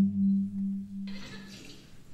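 A low sustained musical note with overtones, wavering slowly, that dies away about a second in, leaving a faint hiss: the opening of a film's soundtrack playing in a cinema.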